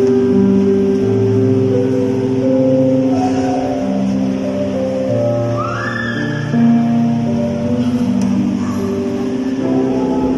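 Electronic keyboard playing slow, held chords, an instrumental passage with the notes sustained and the chord changing every second or so.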